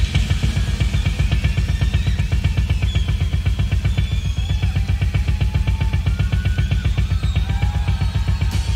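Rock drum kit in a live concert recording, played with no singing over it: a fast, even run of drum strokes with the bass drum strongest.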